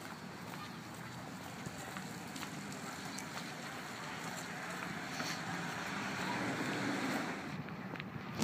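A car driving past on a wet street: the hiss of its tyres on the wet road builds over several seconds and drops away shortly before the end.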